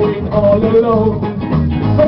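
Live skinhead reggae band playing an instrumental passage between sung lines: guitar and bass guitar, with a melodic line moving over a steady bass.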